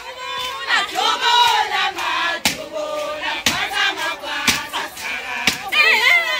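A group of women chanting and calling out together in a Zulu wedding dance song, many voices overlapping, with sharp beats about once a second in the second half.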